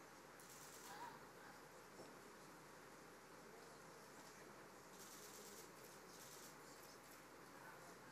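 Near silence: room tone, with a few faint scratches of a pen on paper, about half a second in and twice more around five and six seconds.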